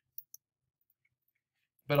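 Two faint, quick computer mouse clicks, a fraction of a second apart, near the start: a right-click opening a layer menu.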